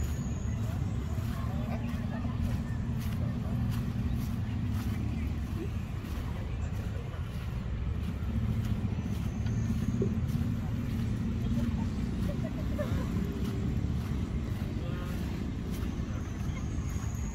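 Outdoor park ambience: a steady low rumble with faint, indistinct voices of people in the distance.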